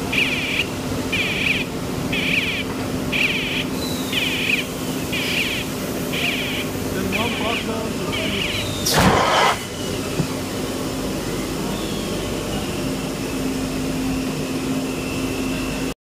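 An EPS panel moulding line runs with a steady machine hum. A warning beeper pulses about once a second and stops about nine seconds in. A short, loud hiss of escaping air follows.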